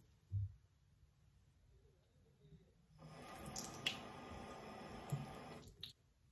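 A bathroom sink tap running for about three seconds, from about halfway through to shortly before the end, when it is cut off suddenly. It is preceded by a short thump just after the start.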